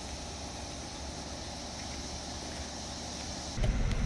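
Steady buzzing chorus of periodical (17-year) cicadas. About three and a half seconds in it cuts abruptly to the low rumble of a car driving, heard from inside the car.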